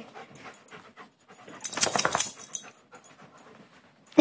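A dog panting as it spins in circles trying to reach a toy bunny stuck in its collar, loudest in a short burst about halfway through.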